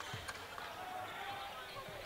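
Faint gymnasium background noise during a basketball game: a low, steady murmur with a few light taps.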